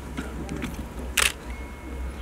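A single short camera-shutter click about a second in, over the low steady hum of the hall.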